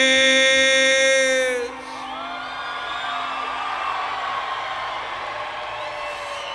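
A male rock singer holds a long sung note in a live performance; it ends about a second and a half in, and the concert audience then cheers, whoops and yells.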